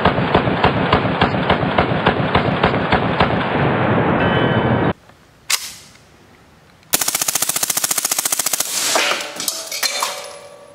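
Automatic fire from a 9mm MP5 submachine gun: a long run of evenly spaced shots that cuts off suddenly about five seconds in. After a pause there is a single shot, then a fast burst of automatic fire lasting about two seconds, with ringing after it near the end.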